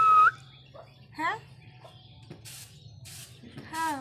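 Indian ringneck parrot (rose-ringed parakeet) giving a loud, short whistled screech that rises at the end, then a few quieter voice-like syllables and short hisses.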